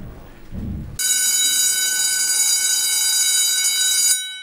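A loud, steady, high-pitched electronic tone, like an alarm buzzer, starts about a second in after a low rumble and holds unchanged until it cuts off at the end.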